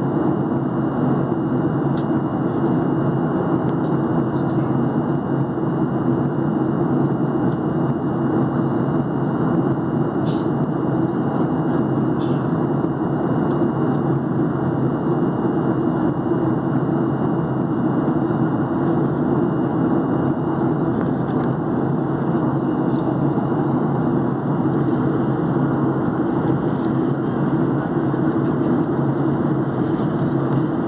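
Steady cabin noise inside a Boeing 737-800 airliner in flight: an even rush of airflow and engine noise, with a faint steady high whine and a few faint clicks.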